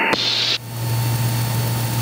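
Cabin noise of a Mooney M20K in flight: the steady low drone of its engine and propeller under an even wash of hiss. A short high-pitched hiss comes in the first half second.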